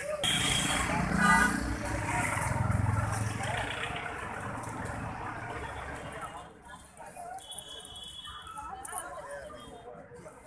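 Outdoor street ambience: indistinct voices of people talking, mixed with road traffic. A low rumble, as of a vehicle passing, is loudest in the first few seconds and then fades. A brief high tone sounds about eight seconds in.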